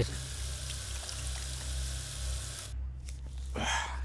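Water running from a tap into a washbasin as hands are rinsed under it, a steady splashing hiss that cuts off sharply about two-thirds of the way through.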